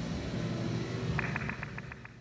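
Playback of a machine-shop recording, a drill press with a prototype artificial spinal disc clamped under it, heard through the room's speakers as a steady rumble and hum. Past the middle, a quick run of about eight clicks as the laptop volume is stepped down, and the noise drops.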